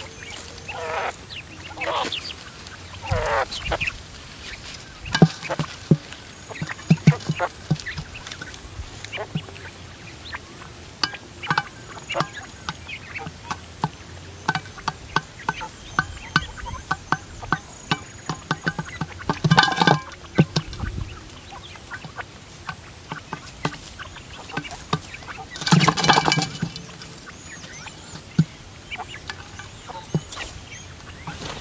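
Quail pecking grain off a metal pan lid: many quick, irregular taps, with a few chirping calls in the first few seconds. Two louder scuffling bursts come later, about twenty and twenty-six seconds in.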